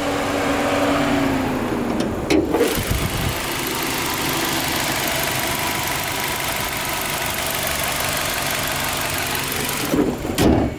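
Nissan Sylphy 1.6's four-cylinder petrol engine idling steadily, heard with the bonnet open over the engine bay. A short clatter comes about two and a half seconds in as the bonnet goes up, after which the engine noise carries more hiss.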